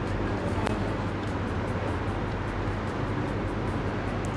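Faint background music over a steady low hum, with a single soft tick under a second in.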